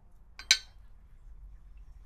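One sharp clink with a brief ringing as a glass gin bottle's neck knocks against a jigger while gin is measured out, with a smaller tick just before it.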